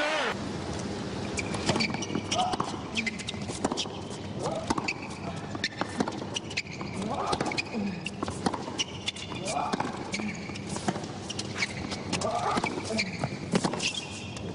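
Tennis rally on a hard court: sharp, irregular pops of the ball coming off the rackets and bouncing on the court, over the murmur of a stadium crowd.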